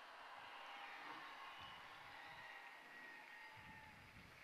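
Very faint noise of a large outdoor crowd, an even hiss barely above silence.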